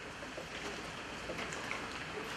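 A pause in speech: steady hall room tone and microphone hiss, with a few faint small sounds.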